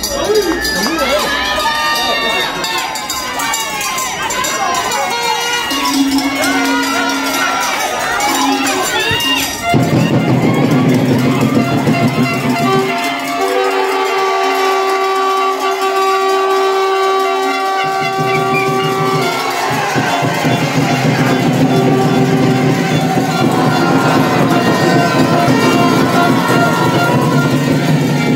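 Rugby spectators shouting and cheering, many voices at once. About ten seconds in, music with long held notes and a pulsing beat cuts in abruptly and takes over.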